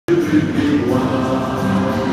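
Many voices singing together in a slow, choir-like song with long held notes.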